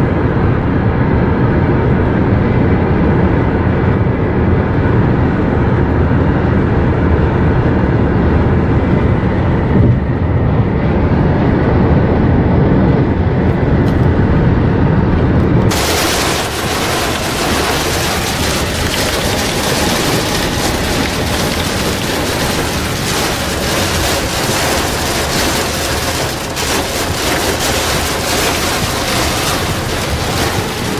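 Steady low road and engine rumble inside a car at highway speed. About 16 seconds in it breaks off abruptly into a dense, loud hiss of heavy rain pounding the car and tyres spraying on the flooded road.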